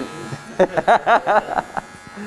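Electric hair clippers buzzing steadily, with a man laughing in a quick run of pulses through the middle.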